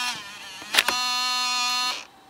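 LS-240 SuperDisk drive's motorized eject pushing out a 3.5-inch floppy disk: a short motor whine, a click about three-quarters of a second in, then a steady whine for about a second that stops near the end.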